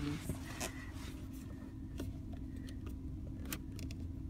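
Steady low hum of a car idling, heard from inside the cabin, with a few faint clicks.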